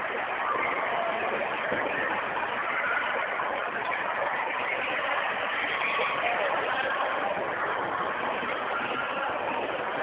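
Steady, even din of an indoor ice rink, with faint voices mixed into it.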